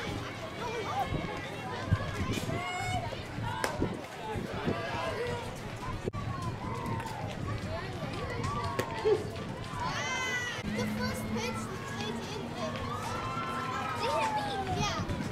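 Young girls' voices calling out and cheering, overlapping and high-pitched, with a louder rising shout about ten seconds in. Two sharp knocks stand out, about two seconds in and about nine seconds in.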